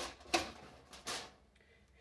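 Three short knocks and clinks as a foil-covered flan mold is set down on the wire rack inside an aluminium pot and settles into place.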